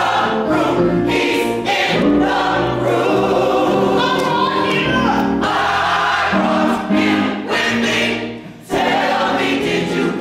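Gospel church choir singing in full voice with accompaniment, the sound dropping away briefly about eight seconds in before the choir comes back in.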